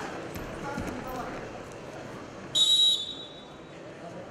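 A referee's whistle, one short, shrill blast about two and a half seconds in, halting the wrestlers' tie-up. Arena crowd murmur runs underneath.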